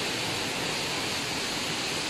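Steady rushing of water from a boulder-strewn stream and small waterfall, an even noise with no break.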